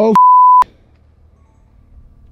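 Censor bleep: a loud, steady 1 kHz beep about half a second long. It starts abruptly right after a shouted "Oh!", covering the word that follows, and cuts off just as suddenly.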